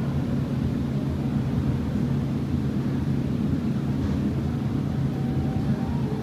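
Steady low hum and rumble of a cruise ship's machinery and ventilation, heard out on deck.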